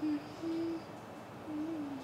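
A woman humming a few short, low notes with her mouth closed, the pitch wandering a little from note to note like a loose tune.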